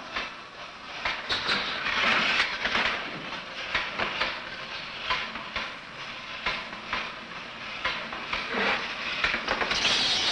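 Mechanical fright device clattering and hissing as it is set going: an uneven run of rattling clicks over a steady hiss. It is a noisemaking, moving toy monster built to frighten a baby monkey.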